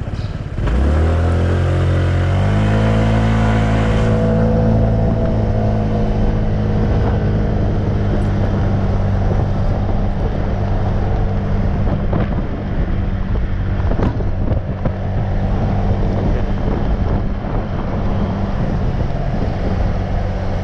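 Motorcycle engine pulling away from a stop about a second in, its pitch climbing over the next couple of seconds, then running steadily at cruising speed with a rush of wind and road noise.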